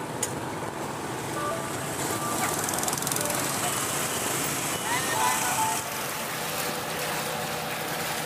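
Steady din of vehicle engines with indistinct voices as motorbikes and a van board a river vehicle ferry, with short scattered tones over the noise.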